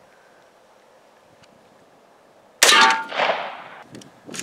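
A single 5.56 rifle round striking stacked steel armor plates: a sharp crack about two and a half seconds in, then a metallic ring that fades over about a second.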